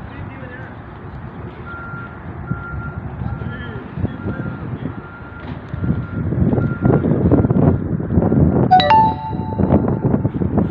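A vehicle's reversing alarm beeping steadily, about one beep a second. Rumble of wind on the microphone grows loud in the second half, and a brief pitched sound comes near the end.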